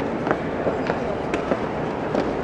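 Irregular sharp clicks of footsteps on stone stairs over the steady murmur of a crowd of visitors.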